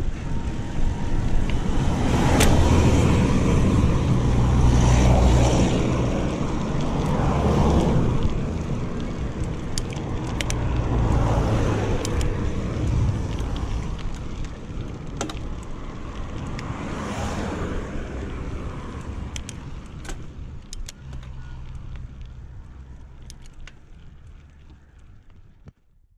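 Wind buffeting a handlebar-mounted camera's microphone and mountain-bike tyres rolling on a dirt road during a descent, with occasional sharp clicks. The sound fades out gradually over the second half.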